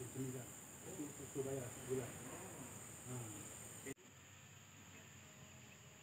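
Faint outdoor ambience dominated by a steady high-pitched insect drone, with faint distant voices in the first four seconds; about four seconds in the sound changes abruptly and becomes quieter, the insect drone still going on.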